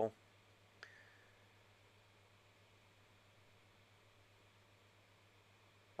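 Near silence: faint room tone with a low hum, and one faint click a little under a second in.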